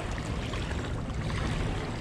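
Steady wind noise rumbling on the microphone, mixed with small waves of choppy river water washing against the rocky bank.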